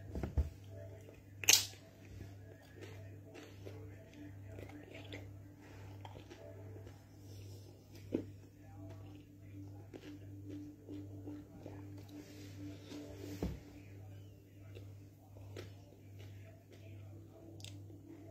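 Faint chewing and mouth sounds of a man eating a mouthful of chicken curry, with one sharp click about a second and a half in. A steady low hum runs underneath.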